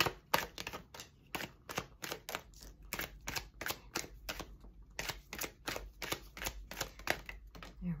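Tarot deck being shuffled by hand: a quick, even run of card snaps and clicks, about three or four a second.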